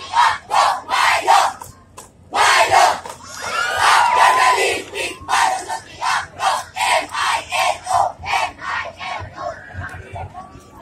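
A cheerdance squad shouting a chant in unison as short rhythmic shouts, about two a second, with a brief break about two seconds in. A few higher yells rise over it near the middle.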